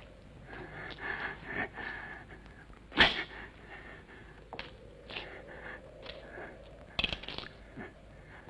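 Faint, indistinct, breathy voice-like sounds, broken by a sharp crack about three seconds in and a smaller crack about seven seconds in.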